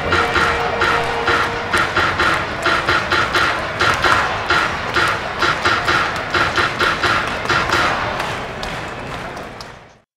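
Background music with a steady beat, fading out over the last two seconds.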